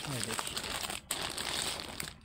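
Plastic wrapping crinkling and rustling as a plastic-covered saree is handled and lifted out of its box, with a brief pause about halfway.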